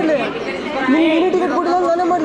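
Chatter: several people talking at once, with no other distinct sound.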